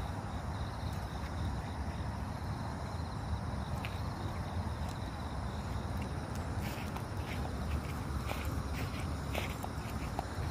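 A steady low outdoor rumble; from about halfway through, a run of short scuffing footsteps on a dirt path as the walk gets going.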